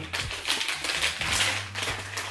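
Plastic snack wrappers and pouches crinkling and crackling in irregular bursts as packaged snacks are handled and set down on a pile of more wrappers.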